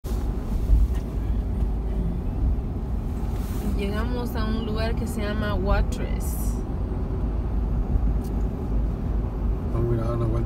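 Steady low rumble of a car driving at road speed, heard from inside the cabin: tyre and engine noise.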